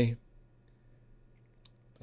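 Near silence: quiet room tone, with a couple of faint short clicks about three-quarters of the way through.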